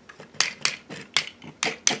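Plastic joints of a Transformers Combiner Wars toy clicking as the Offroad arm is moved on Motormaster's shoulder. There are about six sharp clicks, unevenly spaced.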